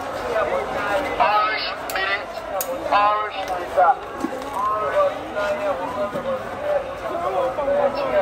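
Several people talking and calling out close by over the general noise of a busy street market.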